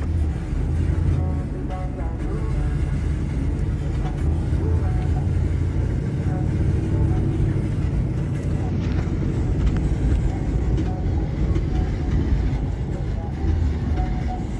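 Car driving along an unpaved dirt track, heard from inside the cabin: a steady low rumble of engine and tyres.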